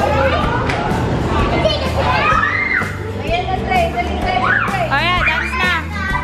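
Young children's high voices, shouting and squealing as they play, with a warbling squeal near the end, over background music with a steady bass line and people talking.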